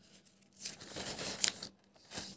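Paper pages of a softcover workbook being turned and smoothed by hand, a soft rustle that swells about half a second in and fades after about a second.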